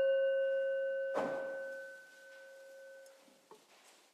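A brass singing bowl struck once with a mallet, ringing with several clear overtones and fading out over about three seconds, marking the end of a minute of silence. About a second in, a brief soft rustle comes as the higher overtones stop.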